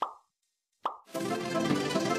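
Two short pop sound effects from the video's subscribe-overlay animation: one at the very start and one just under a second in, with silence between them. A little after one second, light instrumental background music starts up.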